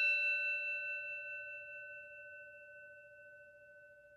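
The ringing of a single struck bell-like chime, a few clear tones dying away over the first two to three seconds.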